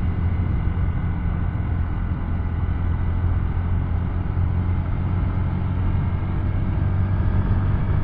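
2024 Honda Navi's 109cc single-cylinder engine running steadily under throttle as the scooter starts up a hill, with road and wind noise; the engine is new and still in its break-in.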